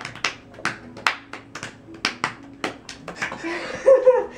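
Hands patting and slapping a dog's belly like a drum: a quick string of sharp slaps, about three a second.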